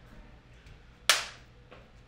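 A film clapperboard snapping shut once, a single sharp clack about a second in, marking the take.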